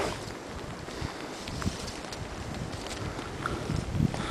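Steady, even outdoor rushing noise with no distinct events.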